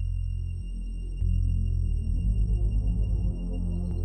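Deep, droning electronic ambient music: sustained bass notes that shift in steps, with a pulsing throb for about a second past the middle and thin steady high tones above. It is the instrumental introduction of a song, before the vocal comes in.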